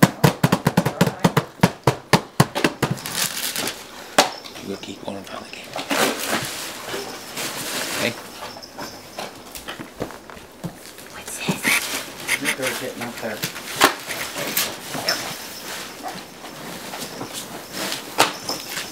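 Hands tapping quickly on a gift-wrapped cardboard box, about five taps a second for the first three seconds, then scattered crackling and rustling.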